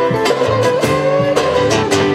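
A live rock band playing an instrumental passage: an electric guitar and a strummed acoustic-electric guitar over drums, with one sustained guitar note bending slightly upward about a second in.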